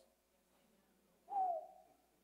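A single short hoot-like voice from the congregation about one and a half seconds in, high and slightly falling in pitch before fading: an affirming response to the question "Anybody else?".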